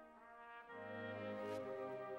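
Soft film-score music of held, brass-like chords. Lower notes come in under a second in.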